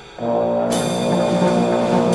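Trombone playing a low held note that starts a moment in, with cymbals from the drum kit coming in just under a second in, as part of a free-jazz trio performance with double bass.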